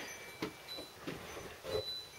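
Quiet workshop room tone with a single faint click a little way in.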